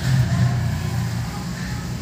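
A steady, low mechanical hum with a slightly wavering pitch, like a running motor or engine in the background.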